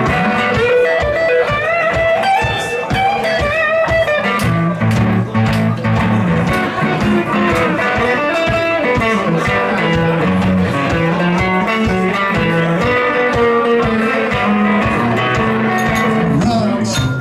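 Solo guitar played live in an instrumental passage without singing: a low bass line under a picked melody whose notes bend in pitch in the first few seconds.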